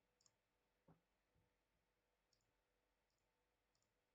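Near silence, broken by a few faint computer mouse clicks and a soft knock about a second in.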